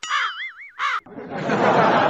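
A man laughing in a high, wavering giggle. About a second in, a loud, dense wash of noise with voices rises and carries on.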